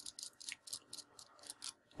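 Faint, quick run of small metallic clicks and scrapes, several a second, as the threaded metal bottom section of an Innokin iClear 30S clearomizer is unscrewed by hand.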